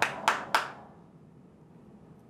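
A single person clapping slowly: three sharp hand claps about a quarter second apart, each ringing briefly in the room.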